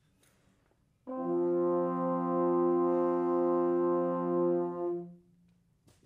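Band low brass section playing one sustained chord, entering together about a second in, held steady for about four seconds and released together.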